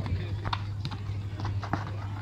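Outdoor football match ambience: a steady low hum under scattered distant voices, with a few short, sharp knocks.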